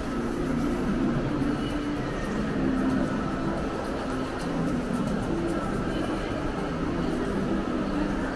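Steady background noise of a busy public space, with faint music and indistinct sound running through it.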